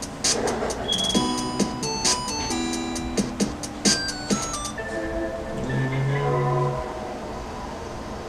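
Video-game-style electronic music: simple synth notes stepping up and down with short clicky bleeps, like a game's character-select menu, then softer held tones with a low hum for the last few seconds.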